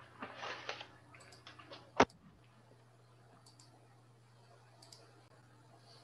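Computer mouse clicks: a short rustle, a few small clicks, then one sharp click about two seconds in, with a couple of faint clicks later, over a low steady electrical hum.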